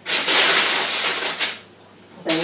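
Thin, crisp baked flaxseed-and-seed crackers being broken apart along their scored lines on baking paper: a dry crackling crunch lasting about a second and a half.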